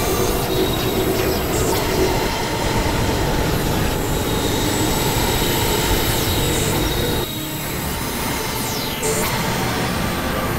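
Experimental electronic noise music: a dense, grinding synthesizer noise texture with faint held high tones and a few falling high-pitched sweeps, dipping briefly about seven seconds in.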